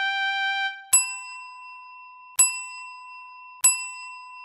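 A bell-like chime struck three times, each a bright ding that rings on and slowly fades, the strikes about a second and a half apart. The last notes of a short musical jingle die away just before the first ding.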